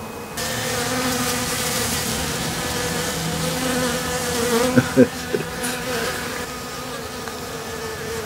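Honeybees buzzing close to the microphone: a steady, even hum of wingbeats. A hiss sits over the buzz from just after the start until about halfway, and a couple of short knocks come about five seconds in.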